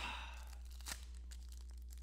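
Faint crinkling of a foil trading-card pack wrapper being gripped and pulled open, with a few small clicks and crackles.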